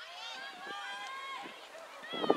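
Several voices shouting and calling at once, overlapping high-pitched calls across a soccer field.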